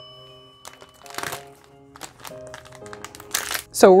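Soft background music with sustained notes, over which plastic packaging crinkles twice as the socks are pulled out, about a second in and again near the end. A chime fades out at the start.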